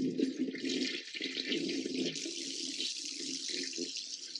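Water running steadily.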